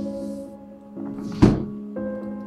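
Sombre background music with sustained tones, with one heavy thud about one and a half seconds in.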